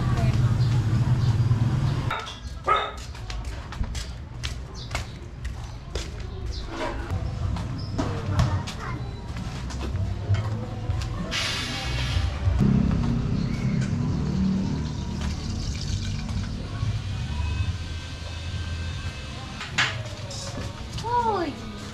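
Alley ambience heard on foot: footsteps on concrete about twice a second, with people's voices and music playing nearby. A low hum fills the first two seconds, and a brief hiss comes about halfway through.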